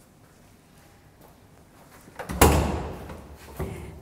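A metal door thuds loudly about two seconds in, with a short echoing tail, then gives a lighter click near the end: a locked door being tried by its lever handle.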